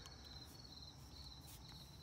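Near silence, with faint, steady chirping of crickets in the background.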